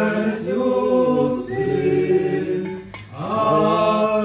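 Several voices singing a church chant together in sustained sung phrases, with a short break for breath about three seconds in before the next phrase begins.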